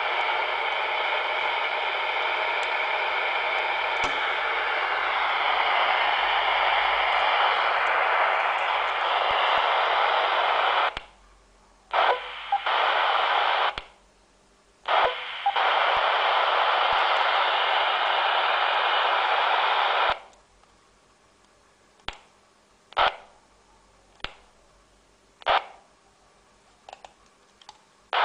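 Steady hiss from a 10-metre FM handheld radio's speaker as it receives the 29 MHz repeater. It cuts out briefly twice, and stops about twenty seconds in. A few sharp clicks follow.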